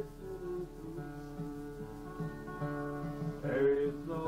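Background music led by acoustic guitar, with sustained notes throughout.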